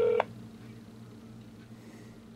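A smartphone's steady call-progress tone, sounding while the call is dialing, cuts off just after the start. A faint steady low hum remains.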